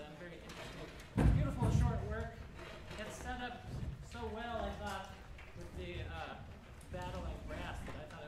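Indistinct speech in a hall, with one loud, deep thud about a second in.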